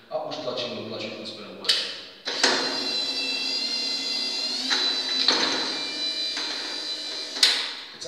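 Electric drive of a Yack N910 wheeled stair climber running with a steady whine for about five seconds while it lifts itself and its seated passenger onto the next step, with a knock just before it starts and another as it stops near the end.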